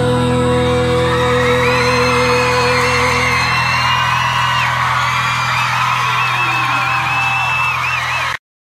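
The closing held chord of a live Brazilian pop ballad by a band, with high, wavering vocal cries over it. A sustained mid note drops out about three seconds in while the low chord rings on.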